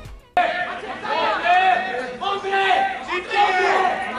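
Several men shouting and calling out over one another on a football pitch. The voices cut in abruptly just after the start and stay loud.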